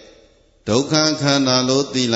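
A monk's voice speaking into a microphone during a Buddhist sermon, picking up again after a brief pause about half a second in.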